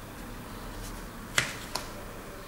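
Two sharp clicks about a third of a second apart, the first louder, as the plastic e-book reader is handled, over a steady background hiss.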